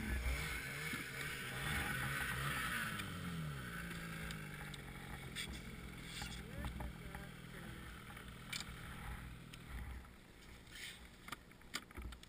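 A snowmobile engine idling, its pitch wavering at first and then holding steady until it cuts out about ten seconds in. There is wind on the microphone at the start, and a few sharp knocks of hands working at the sled's side panel.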